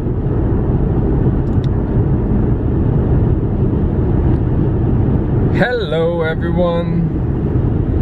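Steady road and engine noise inside a car cruising at highway speed.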